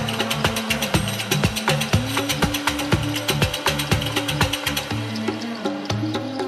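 Afro house DJ mix playing: a steady electronic beat of about two low thumps a second with dense, quick percussion above and a sustained bass line. About five seconds in, the top end thins out as the highs are pulled back.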